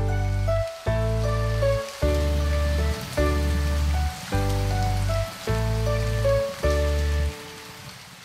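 Rain sound effect, a steady patter, under an instrumental intro of chords with a deep bass note changing about once a second. Near the end the music stops and the rain goes on alone, fading slightly.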